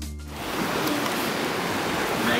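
Electronic music that stops about half a second in, giving way to a steady wash of sea surf against the rocks.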